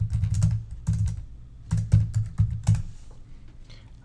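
Computer keyboard being typed on: quick keystrokes in irregular bursts, thinning out over the last second.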